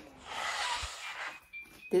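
A breathy, hissing exhale lasting about a second, with no voice in it.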